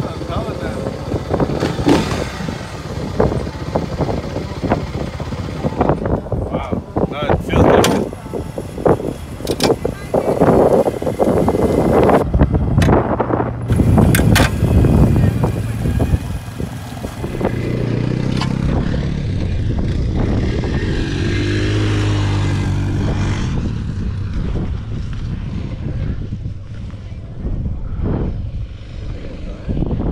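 Small off-road engines running, with scattered sharp knocks on the microphone in the first half. Later a quad ATV engine runs close by, its pitch bending up and down.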